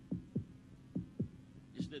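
Heartbeat sound effect: low double thumps, lub-dub, repeating a little under once a second, three times, over a faint steady hum.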